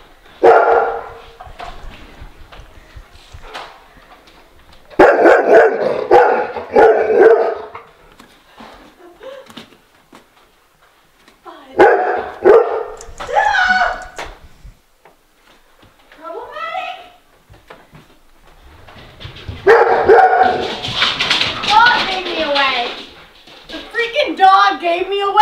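A dog barking in several loud bursts, with a fainter whine in between.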